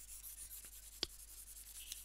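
Faint stylus strokes rubbing across a tablet screen, with a single sharp tap about a second in.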